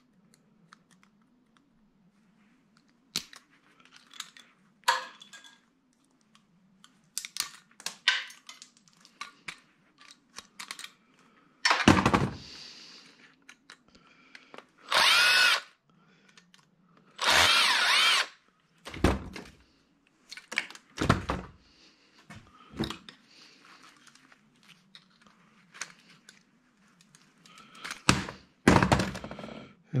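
Cordless drill-driver run in short bursts, its motor whining up and slowing down as it backs out the bolts holding a small motor. Between the runs come light metal clicks and clinks of parts being handled. The longest runs, each about a second, fall around the middle.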